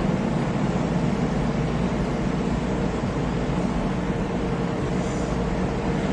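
Steady road and engine noise inside a moving car's cabin, a low, even rumble.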